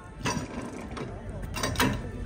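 Metal clicks and clanks of a cannon's breech mechanism being worked by hand, with a few sharp knocks, the loudest near the end.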